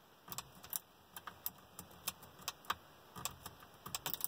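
Lock pick and tension wrench clicking and scraping inside a car's wafer-type ignition lock cylinder as it is being picked: faint, irregular small metallic clicks, several a second, with a denser run of louder clicks near the end.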